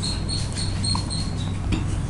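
Dry-erase marker squeaking on a whiteboard as words are written, a string of short high squeaks in the first second and a half, then a short rubbing stroke near the end, over a steady low hum.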